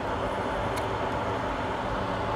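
Steady background noise like a running fan or air conditioner, even throughout, with one faint tick about three quarters of a second in.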